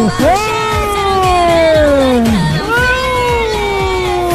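Domestic cat giving two long, drawn-out yowls, each sliding steadily down in pitch over about two seconds, the second beginning a little past halfway. Background music with a quick low beat plays underneath.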